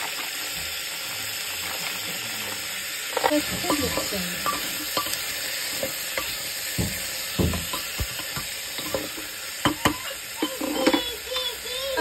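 Tomatoes, green capsicum and boiled chickpeas sizzling in hot oil in an aluminium pressure cooker while a wooden spatula stirs them, with irregular knocks and scrapes of the spatula against the pot.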